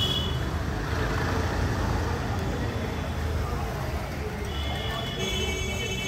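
Street background noise: a steady low rumble of traffic, with a high, steady multi-tone sound coming in about four and a half seconds in and holding to the end.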